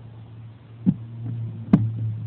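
A low steady hum with two sharp knocks, one just before the middle and a louder one near the end: a hand bumping the carpet and the phone lying on it.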